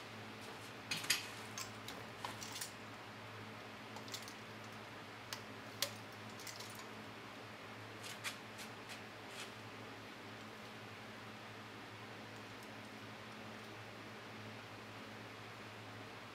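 Light clicks and knocks of two vz. 61 Skorpion submachine guns being picked up off a metal workbench and handled, scattered through the first ten seconds or so, over a steady low hum.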